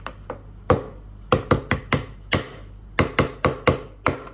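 Small orange plastic toy hammer striking a plaster dinosaur dig-kit egg: about a dozen sharp knocks in irregular quick runs, chipping the egg open.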